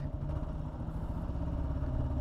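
Kawasaki KLR650 motorcycle's single-cylinder engine running at low revs as the bike rolls slowly in traffic, with a steady low, even pulsing.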